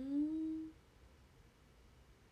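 A young woman's closed-mouth "uun" hum of thought, rising a little in pitch and lasting under a second.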